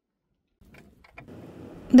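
Silence, then faint background noise with three light clicks about a second in.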